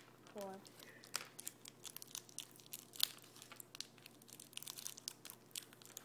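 Warheads sour candy wrappers crinkling and tearing as they are unwrapped by hand, an uneven run of small crackles with one sharper crackle about three seconds in.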